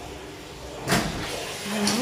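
A single sharp thump about a second in, over faint room noise, followed by a voice starting just before the end.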